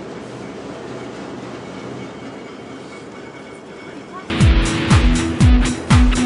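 Low steady background hum for about four seconds, then loud background music with electric guitar and a heavy, even drum beat cuts in.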